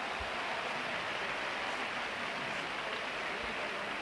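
Steady crowd noise in an indoor basketball arena, an even hum of many spectators with no single sound standing out.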